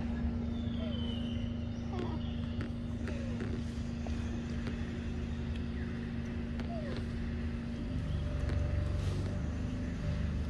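A steady low motor hum with a constant drone, whose rumble shifts and grows louder about eight seconds in, with a few short faint chirps over it.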